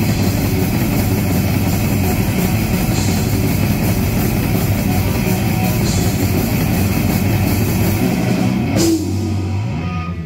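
Live heavy metal band of electric guitars and drum kit playing a fast instrumental passage of a thrash metal song at full volume. About nine seconds in it stops on a final hit, leaving one low note ringing.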